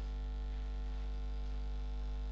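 Steady electrical mains hum: a constant low buzz with a ladder of higher overtones, carried on the audio feed.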